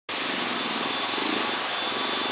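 A small engine running steadily, with a faint high tone above it.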